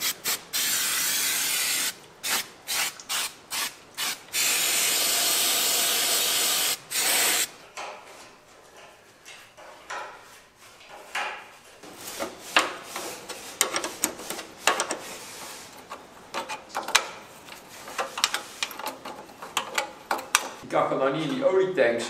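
Aerosol cleaner sprayed from a can in hissing bursts: a long spray of about two seconds, a quick run of six short squirts, then another long spray of about two and a half seconds. After that come light clicks, taps and rubbing as metal parts are handled and fitted by gloved hands.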